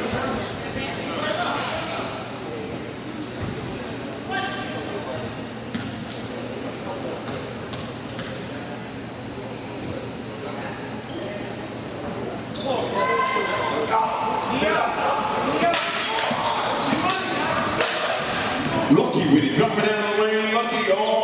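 Basketball bouncing on a gym floor amid players' and onlookers' voices, echoing in a large hall; the voices and activity grow louder about two-thirds of the way through.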